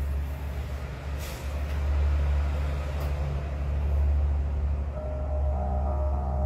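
A steady low rumble, swelling and easing, with a couple of faint clicks. Near the end, a digital piano starts playing soft notes.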